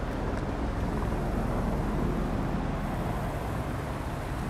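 Steady low rumble of distant city traffic, an even background noise with no distinct events.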